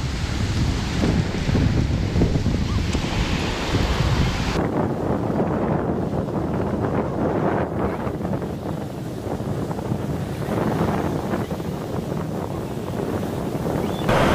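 Surf washing over and around shoreline rocks. Wind buffets the microphone for the first few seconds. About four and a half seconds in, the wind rumble drops away suddenly and the wash of the waves goes on.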